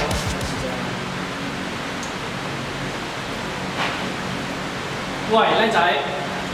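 Steady hiss of room background noise in an indoor range, with a man starting to talk near the end.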